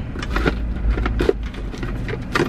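Rummaging through a car's centre-console storage bin: a quick, irregular run of clicks and rattles as small items are moved about, over a steady low rumble.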